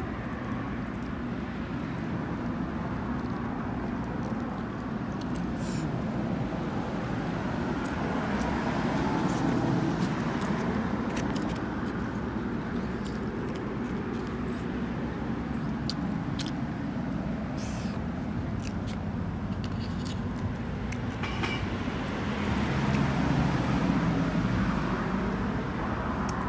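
Road traffic on a nearby street, a steady rumble that swells twice, around nine seconds in and again near the end, with a few light clicks.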